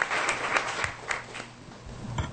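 Audience applauding, the clapping thinning out and dying away over the second half.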